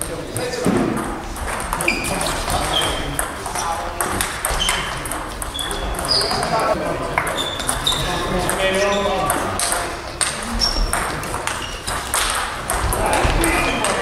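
Table tennis balls clicking off bats and tables in doubles rallies, a quick run of short, high pings and taps, with more rallies on nearby tables adding further clicks.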